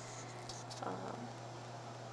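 Steady low electrical hum under faint rustling and small clicks of a handheld camera being turned, with a woman's brief hesitant 'uh' about a second in.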